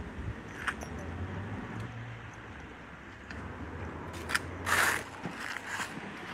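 Quiet street background: a low steady hum of road traffic, with a few small clicks and a short hiss a little before five seconds in.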